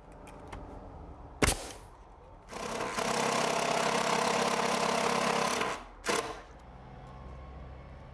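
Cordless impact driver driving a long screw through a door jamb into the wall framing, running steadily for about three seconds with a fast hammering rattle. A sharp knock comes about a second and a half in, and a short burst follows the run.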